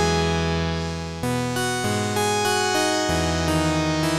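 Analog-style sawtooth synth patch in Arturia Pigments playing sustained chords through a resonant Matrix 12-type low-pass filter with a slow filter-envelope sweep, a retro synthwave pad sound. The chords change about a second in, near the middle and about three seconds in.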